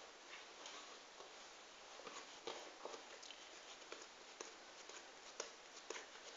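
Near silence with faint, scattered soft taps and rubbing as hands roll a ball of bread dough and set it down on a tray.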